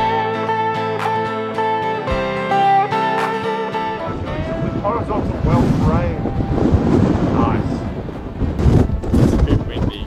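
Plucked acoustic-guitar background music that stops about four seconds in. Strong wind then buffets the microphone, with faint voices in it.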